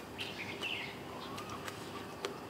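Faint bird chirps in the background, a short cluster early on and a softer call later, with a few soft clicks.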